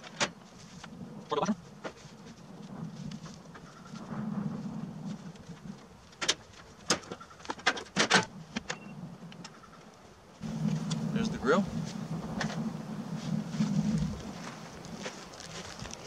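Scattered clanks, clicks and rattles of gear being handled and moved on a steel utility trailer, with a quick run of knocks a little past the middle. A low hum rises and falls underneath, strongest for a few seconds in the second half.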